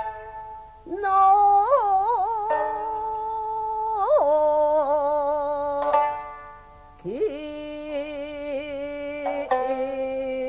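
Jiuta song with shamisen: a woman's voice holds long, wavering, sliding notes over sparse plucked shamisen strokes. There is a short lull about six seconds in, then the voice comes back in on a lower note.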